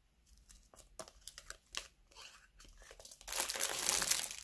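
Plastic zip-lock bags and packaging crinkling as they are handled: scattered light crackles at first, then a louder, continuous rustle in the last second or so.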